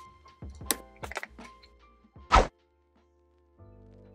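A few light knocks, then one louder, short thump a little over two seconds in. Soft background music with steady held notes comes in near the end.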